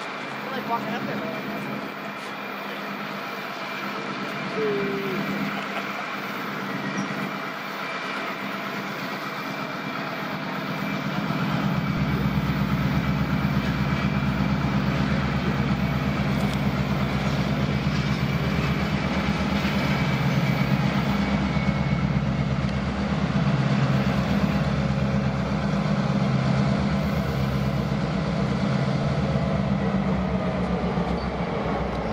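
EMD F-unit diesel locomotives hauling a passenger train as they approach, their engines a steady deep drone that grows much louder about twelve seconds in.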